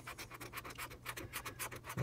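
A coin scratching the coating off a paper lottery scratch-off ticket in quick, repeated short strokes.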